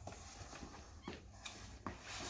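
Faint scuffs and shoe steps on a hard floor as a person's body is dragged along it: a few soft knocks, under a second apart, over a low hum.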